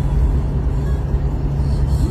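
Car cabin noise while driving: a steady low rumble of engine and road.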